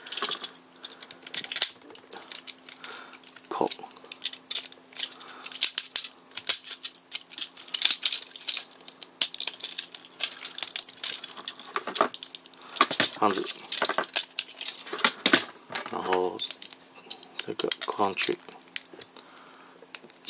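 Irregular small plastic clicks, taps and rattles as the parts of an electroplated gold Tomica Drive Head transforming toy robot are handled, folded and snapped into their catches.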